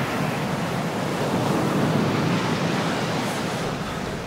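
Ocean surf: waves breaking and foaming in shallow water, a steady rush that swells slightly about two seconds in.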